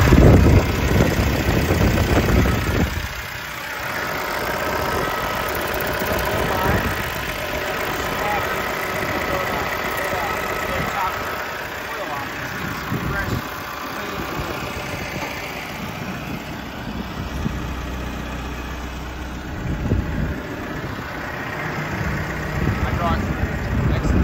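Deutz diesel engine of a Genie GTH-5519 telehandler idling steadily with the engine bay open. It is louder in the first three seconds.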